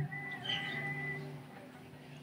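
Acoustic guitar's final chord, cut off sharply, leaving a low ring that fades out over about a second and a half. Over it, a thin high-pitched tone sounds for about a second.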